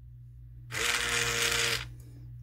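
Hadineeon automatic foaming soap dispenser's pump motor whirring for about a second, with a hiss of foam pushed out of the nozzle, triggered by a hand under its sensor. It starts a little under a second in and cuts off sharply.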